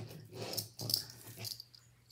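Strands of a stone-chip necklace and its metal gunmetal pendant being picked up and handled: a sharp click, then a few brief rustling rattles of the chips that fade away.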